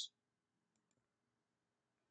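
Near silence: room tone with a couple of very faint clicks about three quarters of a second in.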